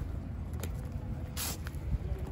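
A car engine running with a steady low rumble. There is a short hiss or scuff about one and a half seconds in.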